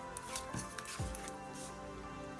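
Soft background music with a steady held chord, over a few faint, brief scratching sounds of a pointed craft tool working at the double-sided tape backing on the edge of a chipboard cover.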